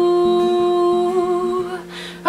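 A woman humming one long held note over acoustic guitar notes; the note wavers a little about a second in and fades out near the end.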